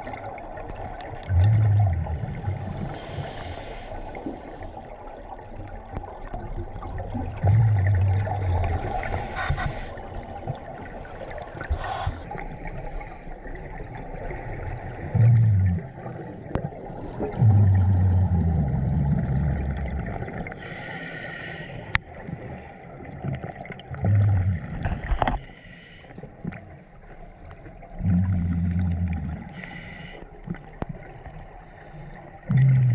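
Scuba diver breathing through a regulator underwater: a short hiss on each inhale and a louder, low rumble of exhaled bubbles roughly every six seconds, about six breaths in all.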